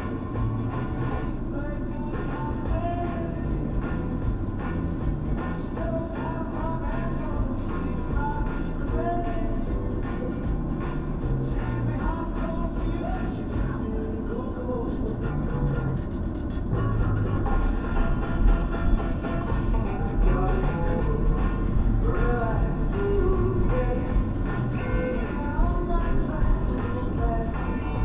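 Music playing on a car radio inside the cabin, a melody over a bass line, getting somewhat louder about two-thirds of the way through.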